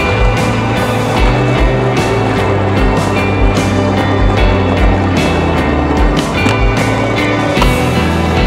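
A music soundtrack with a bass beat, over skateboard wheels rolling on concrete and the sharp clacks of the board.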